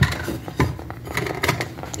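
Dishes and a pot being handled: a sharp knock at the start, then several lighter clicks and knocks.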